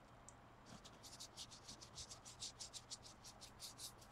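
Paintbrush bristles scratching quickly back and forth on a pumpkin's painted skin, faint, in short strokes about six a second that start about a second in.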